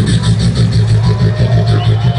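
Beatboxer performing live on stage: a deep, steady bass hum under a fast ticking hi-hat-like rhythm, recorded from the audience with the bass and treble boosted.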